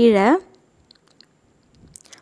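A woman's voice speaks one word at the start. Then come a few faint, light ticks as the aari hook needle pierces and draws thread through the fabric stretched on the frame.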